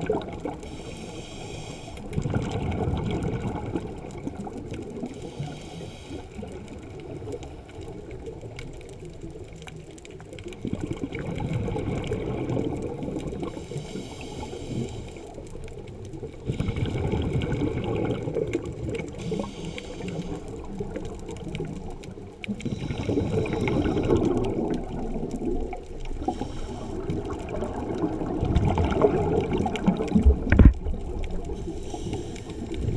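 Scuba regulator breathing underwater: a breath every five or six seconds, each a hiss on the in-breath followed by a surge of bubbling on the exhale.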